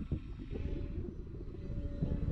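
Wind rumbling on the microphone, with the faint steady drone of a distant HobbyZone Carbon Cub S2 RC plane's brushless electric motor and propeller in flight, coming in about half a second in.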